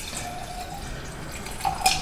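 Sangria poured from a glass pitcher into a wine glass, the liquid splashing and trickling, with one sharp clink near the end.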